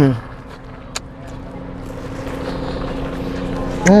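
A woman makes an appreciative 'mmm' at the start and again near the end while eating a burger. Between the two she hums a steady, low, held tone, and there is one sharp click about a second in.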